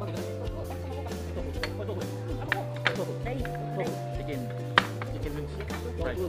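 Background music with long held notes over a steady bass, under indistinct voices, with three sharp clicks of tableware, the last and loudest near the end.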